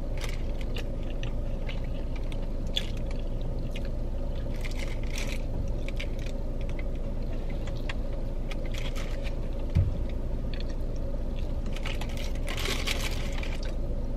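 Close-up chewing and biting of a Hungry Jack's Chicken Royale burger, with wet, crunchy mouth sounds over a steady low hum. A soft thump comes about ten seconds in, and the paper wrapper crinkles near the end.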